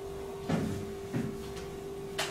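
Two soft knocks, about half a second apart, over a steady faint electrical-sounding hum.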